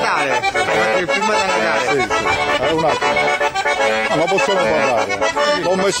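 Accordion playing a traditional folk tune live, continuously.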